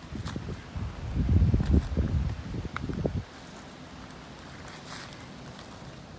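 Wind buffeting the camera microphone in low rumbles for about three seconds, with a few footsteps and crackles in dry leaf litter, then settling to a faint steady breeze.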